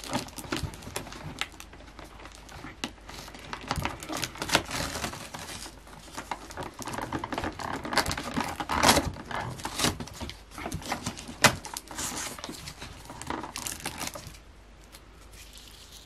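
Paper crinkling and tearing by hand in irregular bursts as a small wrapped gift is unwrapped; the rustling dies down near the end.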